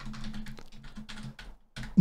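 Computer keyboard typing: a quick run of keystrokes that stops about a second and a half in, over a faint steady hum.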